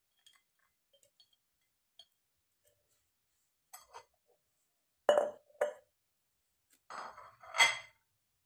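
A glass mason jar and a plate clinking and knocking against each other and the hard tabletop while lime slices are dropped into the jar. Light ticks come first, then two sharp knocks about five seconds in, then a cluster of knocks near the end.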